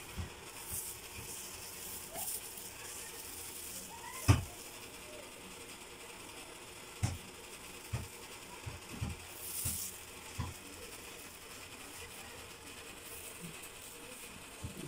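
Hair dye being brushed on by a hand in a loose plastic glove: quiet rustling of the plastic with scattered soft knocks and clicks of the brush, the loudest about four seconds in, and a brief crinkle near the end.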